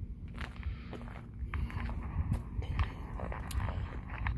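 Footsteps, with irregular light clicks and knocks and the rustle of a handheld camera being moved.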